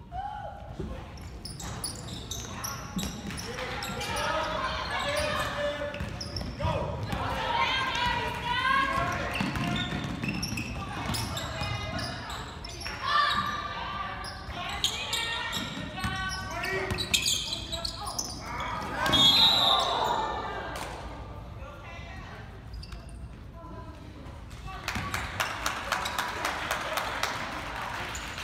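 Basketball game in a large gym: voices shouting and calling out over a basketball bouncing on the hardwood court, all echoing in the hall.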